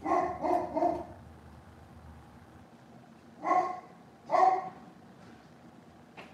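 A dog barking: three quick barks, then two more a few seconds later.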